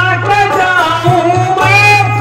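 A performer's voice singing a melodic line through a stage microphone and loudspeakers, over a steady low drone, with a few drum strokes.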